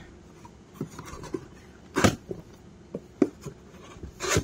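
Cardboard parts boxes being handled and rubbed together inside a shipping carton, small scuffs and rustles with one louder sharp scrape about halfway through.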